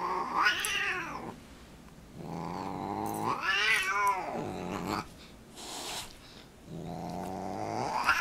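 Siamese cat growling and yowling while play-fighting with a dog: three drawn-out calls, the middle one the longest, rising and then falling in pitch.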